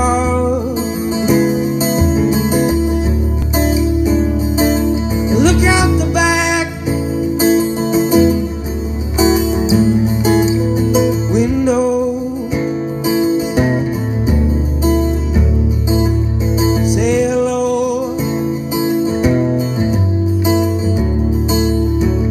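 Amplified acoustic guitar playing the introduction of a slow song, with steady low notes that change every second or two. Wordless singing slides up and down in pitch a few times over it.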